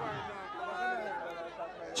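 Crowd chatter: many voices talking at once, with no single voice standing out.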